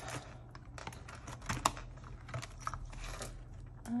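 Paper cash and envelopes being handled: scattered light clicks and rustles, with one sharper click about a second and a half in.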